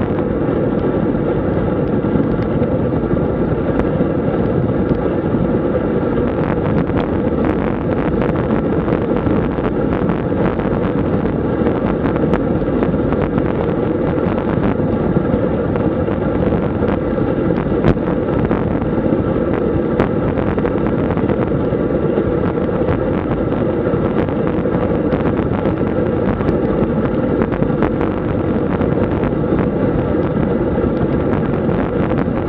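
Steady wind noise buffeting the microphone of a camera mounted on a road bicycle riding at about 35 km/h.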